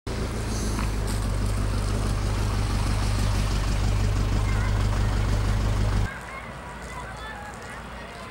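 Outdoor town ambience with a loud, steady low rumble that drops away suddenly about six seconds in. It leaves quieter background noise with faint, short high chirps.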